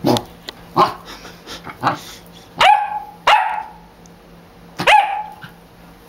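Welsh corgi puppy barking, about six sharp barks roughly a second apart, the later ones louder with a clear pitch: excited play barking while being teased with a toy.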